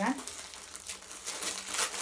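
Packaging crinkling and rustling by hand as a box of makeup items is unpacked, in short irregular rustles that get busier near the end.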